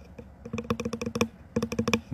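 Rapid typing taps on the touchscreen of the phone that is recording, in two quick bursts of about ten taps a second with a short pause between them.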